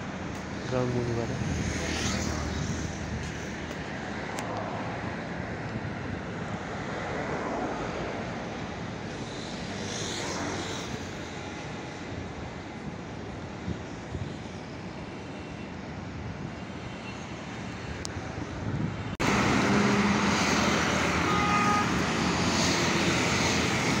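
Steady city traffic noise, a continuous rush of vehicles. About two-thirds of the way through it cuts abruptly to louder roadside traffic.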